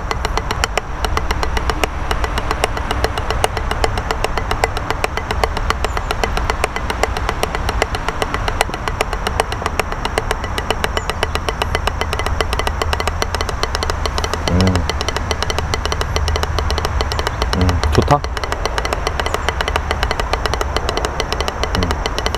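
Drumsticks playing a fast, continuous stream of strokes on a rubber drum practice pad at an even level.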